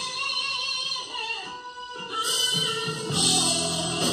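Live gospel music in a church: women singing into microphones over a band with drums and guitar, the music easing into a brief lull about a second and a half in before it picks up again.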